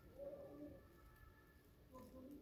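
Faint cooing of a pigeon: a low, pitched coo lasting about a second and a half, starting again at the end.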